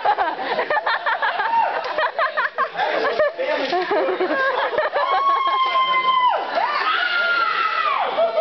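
Audience cheering and shouting over one another. About five seconds in, one voice gives a long, high, steady shriek that drops away, then a second high shriek near the end.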